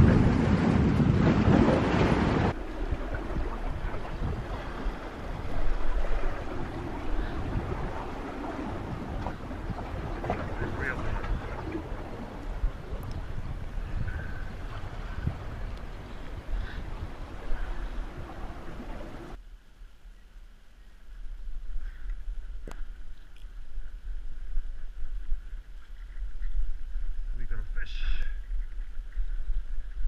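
Wind buffeting the microphone over the sea washing against rocks, the wind loudest in the first couple of seconds. A few sharp knocks come in the later part.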